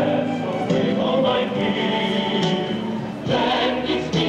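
Choral music: a choir singing slow held chords over accompaniment, changing chord about three seconds in.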